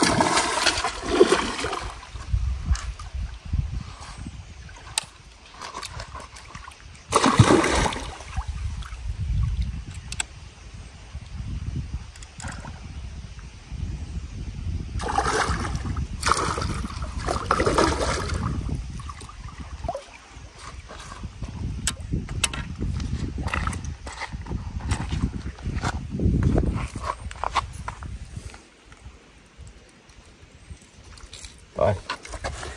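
A hooked trairão (giant trahira) thrashing and splashing at the water's surface in several loud bursts, near the start, about 7 seconds in, around 15 to 18 seconds and again near 26 seconds, as it fights the line.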